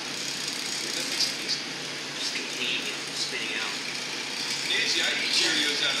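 Steady rushing background noise of a glassblowing hot shop, the furnaces and exhaust fans running, with people talking quietly in the background.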